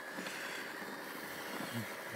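MacBook running at its grey boot screen: a steady mechanical hum with a thin, steady high whine.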